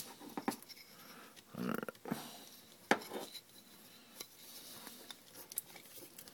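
Sharp plastic clicks and light clatter from a GM PCM wiring-harness connector being handled and pressed back together, a handful of separate clicks with the sharpest about three seconds in.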